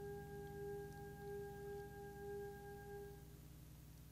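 A quiet, sustained keyboard pad note: one pure, steady tone with octaves above it, fading out a little over three seconds in, over a steady low hum.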